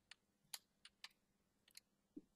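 A few faint, scattered clicks of a computer keyboard and mouse, about five in two seconds, over near silence.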